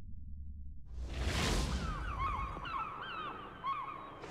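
Logo-sting sound design: a low rumble gives way to a whoosh about a second in, followed by a run of short bird cries, each gliding down in pitch.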